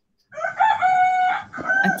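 A rooster crowing once, a single drawn-out call of a bit over a second, heard through a participant's microphone on a video call.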